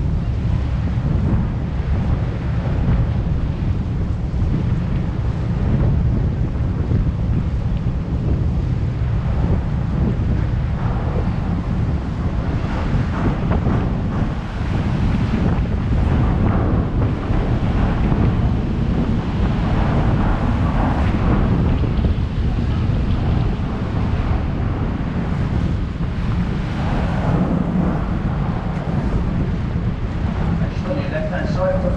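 Steady, heavy wind buffeting the microphone on the open deck of a moving river boat, with water rushing past the hull underneath.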